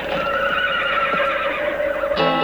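A horse whinnying, one long wavering call, used as a sound-effect sample in a spaghetti-western-themed surf-rock recording.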